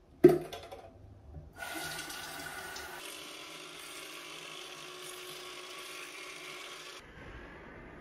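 A sharp knock as the Aquapick cordless water flosser is handled, then the flosser running, its pump humming and its water jet spraying steadily, until it cuts off near the end.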